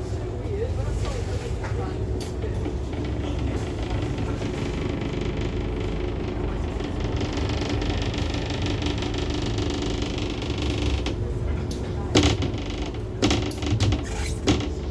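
Scania N230UD double-decker bus's five-cylinder diesel engine running in slow city traffic, a steady low rumble heard from the upper deck. A hiss rises in the middle, and a few sharp knocks and rattles come near the end.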